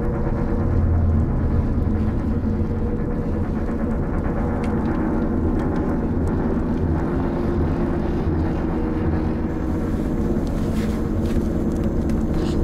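A steady low rumble with a constant hum, like a car running on the road, even in level throughout, with a few faint ticks near the end.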